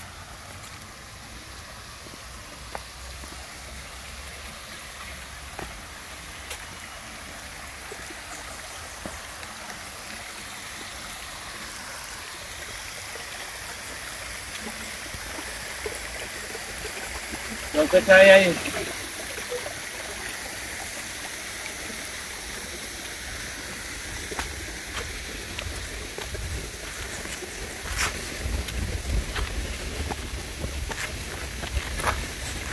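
A small creek running steadily over rocks, with scattered light footsteps. About 18 s in, a short loud voice-like sound cuts through.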